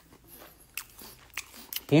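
A person chewing a mouthful of dakgangjeong, crispy Korean fried chicken, quietly, with a few faint crunches. A man's voice starts talking right at the end.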